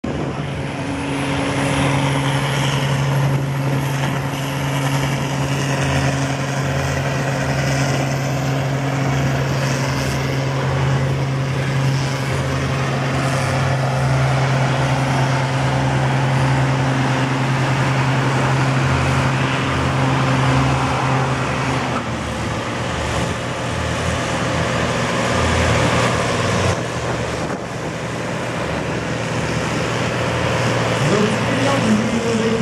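Fendt Favorit 612 LSA tractor's six-cylinder diesel engine running hard under full load as it drags a tractor-pull sled, holding a steady note. About two-thirds of the way through the note drops and the engine sound changes.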